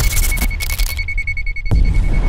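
Electronic logo-intro music: heavy bass under a high, rapidly pulsing beep tone. A second, higher beep joins about half a second in, and a sharp hit comes near the end.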